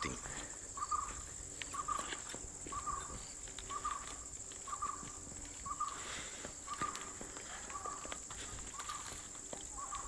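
Insects trilling steadily at a high pitch, with a short animal call repeating about every three-quarters of a second and light footsteps through dry brush.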